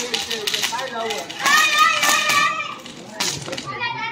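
Children shouting and calling out to one another, loudest about halfway through. A few sharp crackles come from a firecracker sparking on the road.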